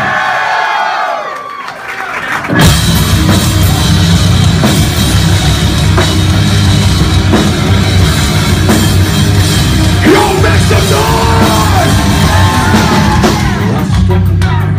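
A shouted "ya!" to the crowd, then about two and a half seconds in a live heavy rock band kicks in suddenly at full volume: distorted guitars, bass and a drum kit playing hard and steady. A singer's voice comes in over the band near the end.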